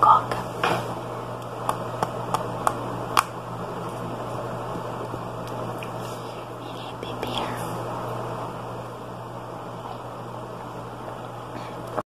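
Close-microphone ASMR handling of a plastic cup: a run of sharp taps and clicks in the first three seconds or so, then quieter rustling as the cup is handled.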